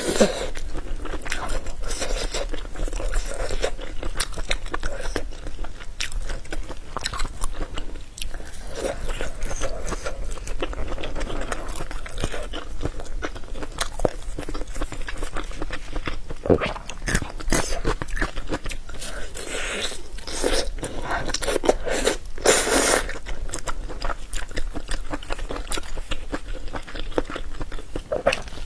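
Close-miked biting and chewing of browned, roasted meat rolls: a steady stream of wet, crackly mouth sounds, with a few louder crunchy bites past the middle.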